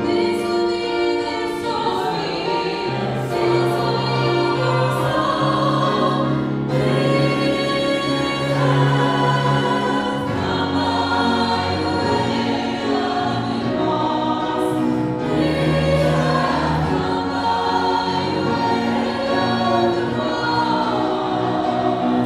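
Mixed church choir of men's and women's voices singing in harmony, with long held notes.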